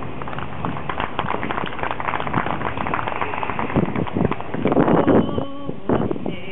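Crowd applauding with dense, irregular clapping and a few cheers, fading near the end.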